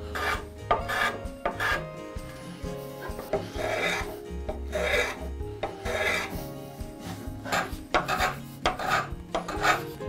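Small block plane taking repeated shaving strokes along the edges of an oak-and-walnut hardwood block, chamfering the corners. The strokes come quickly at first, slow to a few longer strokes in the middle, then quicken again near the end.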